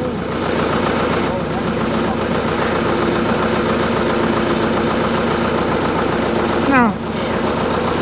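Ford 861 tractor's diesel engine idling steadily, with a short rising sound near the end.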